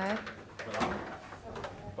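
Hotel room door being pushed open, with clicks and handling noise and a brief murmur of voice at the start.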